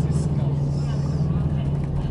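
Steady low drone of a moving bus's engine and road noise, heard from inside the cabin.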